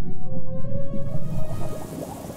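Film soundtrack: a deep rumble under long, drawn-out tones, some of them wavering and gliding in pitch in the second half.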